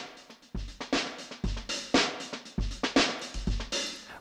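Sampled acoustic drum kit from the Addictive Drums 2 virtual instrument playing a steady groove of kick, snare and cymbal hits, run through an EQ-based multiband compressor with its input gain being driven up.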